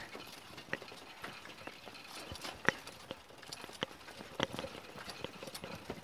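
A four-seat pedal cart rolling over a paved path, giving irregular light clicks and knocks.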